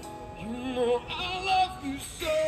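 A street band playing live: a man singing into a microphone over electric guitar. His voice comes in about half a second in, with held, wavering notes.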